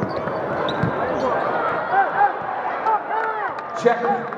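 Basketball game on a hardwood court: sneakers squeak repeatedly as players move, the ball bounces, and there is a sharp knock near the end.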